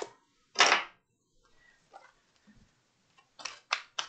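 A tarot deck being shuffled by hand: a few short card swishes, the loudest about half a second in and two quick ones near the end.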